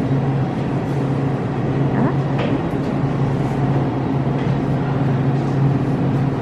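Steady low mechanical hum of a refrigerated display case, one even drone with no change.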